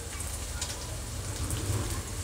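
Chopped vegetables sizzling gently in hot oil in an aluminium kadhai, a steady soft crackle as they are left to sauté lightly without stirring.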